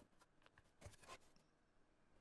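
Near silence, with a couple of faint, short rustles of a paper sheet being handled about a second in.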